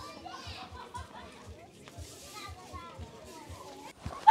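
Faint chatter of several people's voices outdoors, over quiet background music with a steady low beat.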